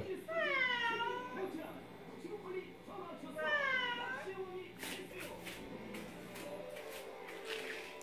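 Domestic cat meowing twice, about three seconds apart, each call dipping and then rising in pitch. Rustling and clicks follow in the second half.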